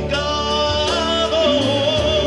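A man singing a Spanish-language gospel song into a microphone over amplified backing music with bass and drums. He holds one long note with vibrato in the second half.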